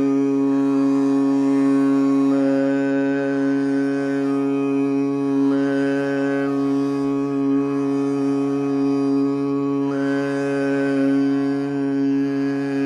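A man's voice holding one long steady note in a Carnatic meditative rendering of raga Saveri, the vowel colour shifting a few times while the pitch stays put.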